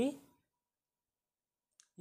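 A man's voice ending a word, then dead silence, then one short click just before the voice starts again.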